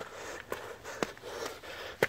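A man breathing hard in quick puffs while climbing steep stone steps, with a few sharp taps of footfalls.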